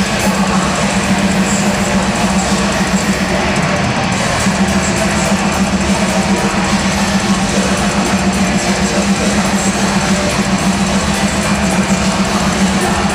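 A melodic death metal band playing live through a concert PA: distorted electric guitars, bass and drums in a loud, dense and unbroken wall of sound, heard from out in the venue's audience.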